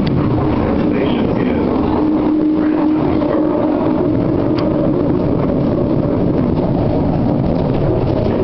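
Inside a moving Detroit People Mover car: the steady running noise of the train on its elevated guideway, a constant rumble with a faint humming tone from the drive partway through.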